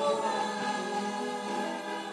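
Gospel choir singing together with soloists on microphones, the full choir coming in loudly just at the start and holding long notes in harmony. The sound is thin, without any bass.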